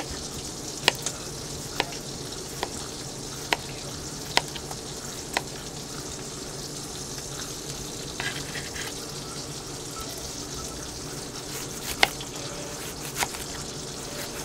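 Chef's knife slicing a cucumber on a wooden cutting board: sharp knocks of the blade hitting the board, about one a second for the first five seconds, then a few scattered ones, the loudest about twelve seconds in. A steady sizzling hiss runs underneath.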